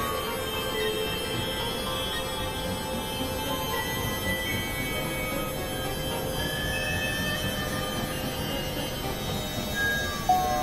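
Experimental electronic drone music: a dense, noisy synthesizer texture with scattered held tones that come in and drop out at shifting pitches, and a few brief gliding tones.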